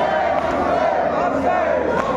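A crowd of men chanting a marsiya together in one melodic line, with sharp slaps of matam, hands beating on chests, cutting through now and then.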